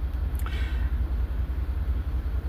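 A low, steady rumble, with a faint short hiss about half a second in.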